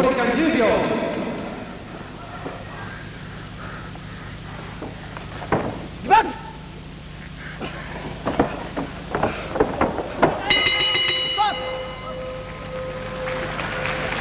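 Voices shouting from ringside during a grappling exchange on the mat, with scattered short knocks. About ten seconds in, a bell rings with a steady, lingering tone, marking the end of the bout's time limit.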